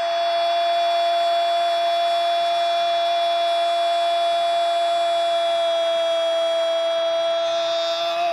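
A Brazilian football commentator's drawn-out goal call: one shouted "gol" held at a single steady pitch for about eight seconds, over the stadium crowd's noise.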